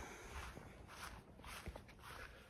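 Faint footsteps on a grass lawn, with otherwise quiet outdoor background.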